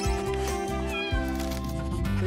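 A domestic cat meowing over steady background music.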